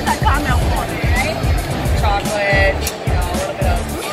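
Background music with a steady beat, with people's voices over it.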